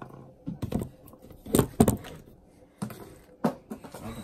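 About six sharp clicks and knocks of kitchen handling, the loudest two close together about a second and a half in: a small measuring cup and a soy sauce bottle being handled against a glass mixing bowl and the counter.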